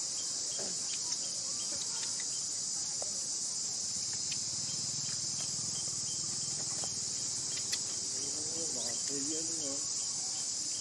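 A steady, high-pitched chorus of insects droning without a break. Near the end a short wavering call rises and falls over it.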